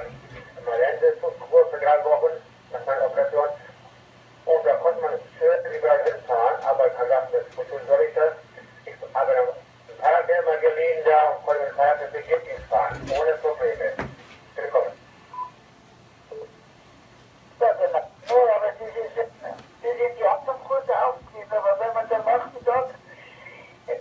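A voice talking over an FM repeater link, heard through a ham transceiver's loudspeaker: thin, narrow-band speech with a steady low hum under it and a pause of a few seconds near the middle.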